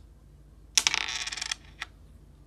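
A short, rapid rattling clatter of small hard objects lasting just under a second, a little past the middle, followed by a single sharp click.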